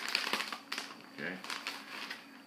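Crinkling and rustling of a record sleeve being handled, mostly in the first half second.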